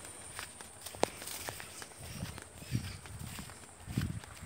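Slow footsteps over dry fallen sugarcane leaves and grass, soft thuds with light crackling of the dry leaves, and one sharp click about a second in.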